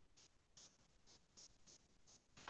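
Near silence, with about five faint, short scratchy strokes of a painting tool working wet paint against watercolour paper.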